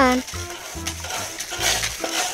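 A hand scooping and scraping wet, gritty sand out of a plastic toy dump truck's bed: a rough crunching rasp that grows louder near the end, with background music under it.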